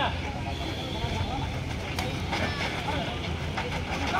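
Outdoor sound at a ball badminton court: faint voices of players and onlookers over a steady low rumble, with a few short faint taps.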